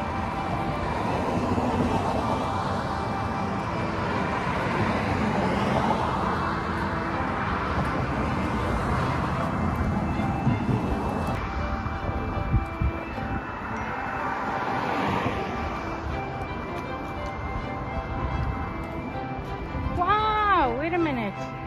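Background music over road traffic: several cars pass one after another, and their noise swells and fades each time.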